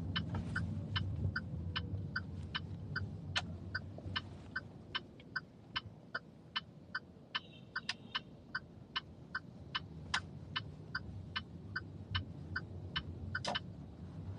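Car turn-signal indicator ticking steadily, about two and a half ticks a second, over the low rumble of a moving car's cabin.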